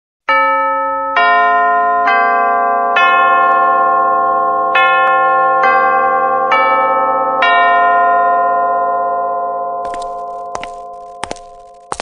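A bell chime rings eight notes in two phrases of four, each note ringing on and overlapping the next before fading out, like a school bell. A few short sharp clicks follow near the end.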